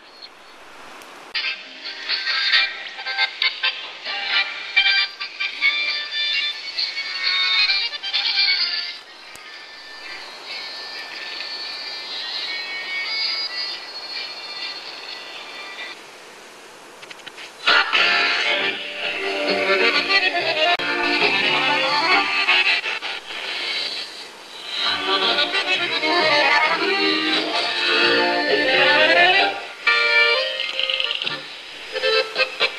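Music received on a portable shortwave radio and played through its small speaker, thin and cut off above the upper mids. It drops to a quieter, thinner signal about nine seconds in, then comes back fuller and louder from about eighteen seconds.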